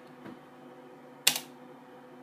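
One sharp click about a second in, a press on the computer that confirms the typed Go to Folder path, after a faint tick near the start. A faint steady hum runs underneath.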